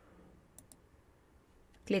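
Two faint computer mouse clicks a little over half a second in, close together, against quiet room tone.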